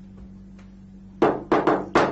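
A quick run of four loud, sharp clacks, the first about a second in, each dying away within a fraction of a second, over a steady low hum.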